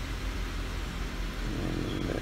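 Car engine idling steadily just after starting, a low even drone heard from inside the cabin.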